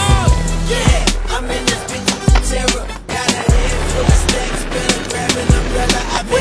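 Hip-hop music track with the sounds of inline skates mixed in: wheels rolling and sharp clacks of the skates striking and grinding on concrete.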